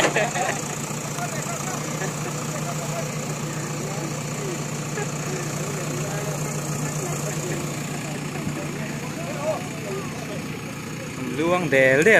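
JCB 4DX backhoe loader's diesel engine idling steadily, with voices talking over it and louder speech near the end.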